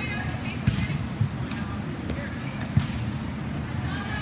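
Volleyballs striking and bouncing on a hard gym floor: several sharp thuds, the loudest nearly three seconds in.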